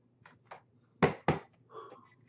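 Two sharp clacks about a quarter-second apart, a little after a second in, with two fainter clicks before them: hard plastic graded-card slabs being handled and set down on a desk.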